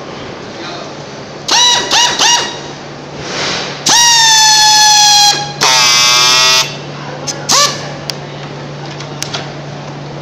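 Pneumatic PET strapping tool running in air-motor bursts: three short whines, then a longer whine lasting over a second whose pitch sags as the motor loads up tensioning the strap, then about a second of lower, buzzier sound typical of the friction-weld stage, and a last short blip. A steady low hum runs underneath.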